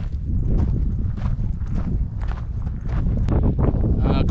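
Footsteps crunching on a loose rock and scree trail, about two steps a second, with wind rumbling on the microphone.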